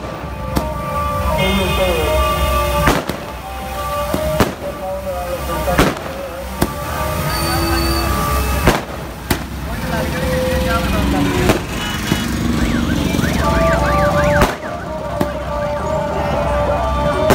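Firecrackers and fountain fireworks going off in a street: about ten sharp bangs at irregular intervals over a continuous noisy hiss.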